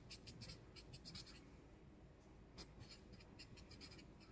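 A marker writing block letters on a sheet of paper on a board: faint, short strokes in quick, irregular succession.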